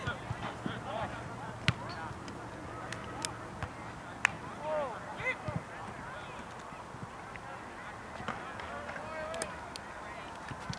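Scattered short distant calls across an open field, with a few sharp knocks of a soccer ball being kicked.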